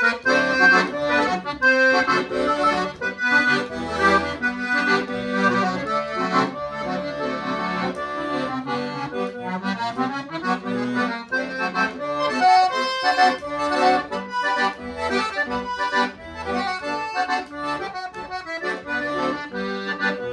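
Paolo Soprani piano accordion, freshly tuned and serviced, playing a lively tune: a melody on the keyboard over a steady rhythmic bass-button accompaniment.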